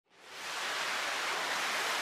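Ballistic missile launch: the rocket motor's exhaust gives a steady rushing noise that fades in over the first half-second and then holds.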